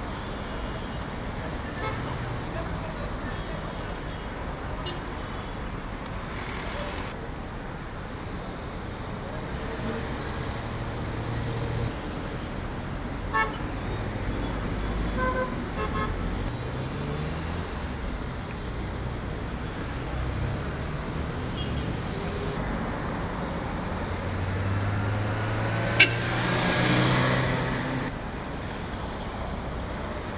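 Busy city street traffic: car and taxi engines running and passing, with a few short horn toots. Near the end one vehicle passes louder and closer, with a sharp click.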